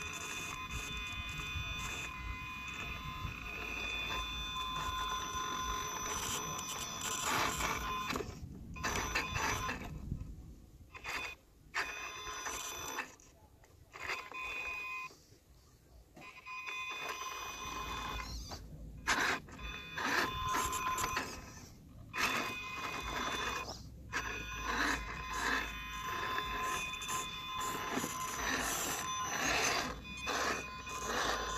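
Electric motor and drivetrain of a scale RC rock crawler whining as it creeps up rock, several steady high tones over a low grinding rumble. The sound cuts out in short gaps in the middle as the throttle is let off, then resumes.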